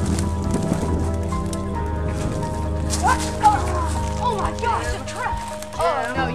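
Background music with steady held notes, with a string of short, high, sliding cries over it in the second half.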